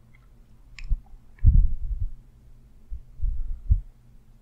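A few low, muffled thumps, with a short sharp click about a second in, over a faint steady hum.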